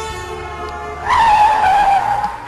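Squeal of a vehicle skidding to a sudden stop: a loud squeal starting about halfway through and falling slightly in pitch, over background music.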